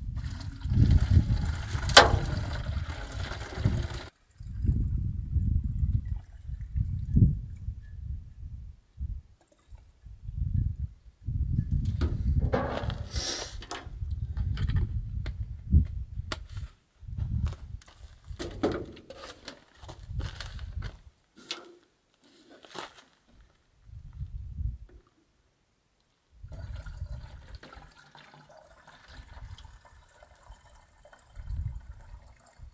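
Water glugging and gurgling as it is poured from a large blue plastic water jug with a spout into a smaller plastic jug, coming in uneven spurts with short pauses. Clicks and knocks of plastic jugs being handled come in the middle stretch.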